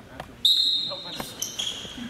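Basketball being dribbled on a hardwood gym floor, with a sudden loud high-pitched sneaker squeak about half a second in, followed by shorter squeaks as players cut on the court.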